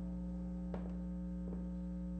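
Steady electrical mains hum, with two brief clicks about three-quarters of a second and a second and a half in.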